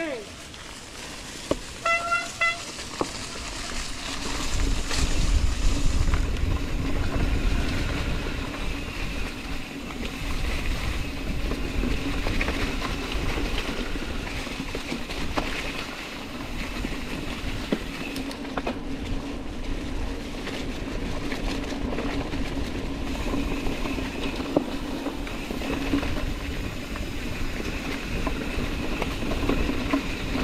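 A mountain bike rolling over a dry-leaf-covered dirt trail, heard from the rider's camera: tyre and trail noise with a steady whirring from the bike and scattered small clicks and rattles. Wind rumbles on the camera microphone, strongest from about four to ten seconds in.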